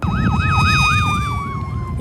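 Fire truck siren sounding a fast warble of about four sweeps a second, which fades near the end, over a steady siren tone that slides slowly down in pitch. A low engine and road rumble runs underneath.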